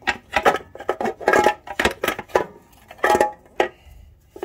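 Irregular metallic clinks, knocks and rattles as an aluminium valve cover and its hold-down hardware are worked loose by hand on a big-block engine, several strikes ringing briefly.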